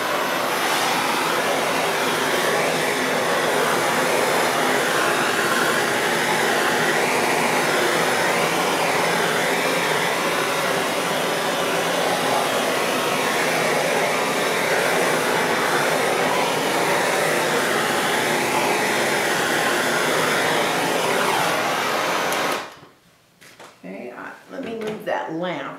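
Handheld gas torch burning with a steady hiss as its flame is swept over wet epoxy resin to pop surface bubbles. It cuts off about 22 seconds in.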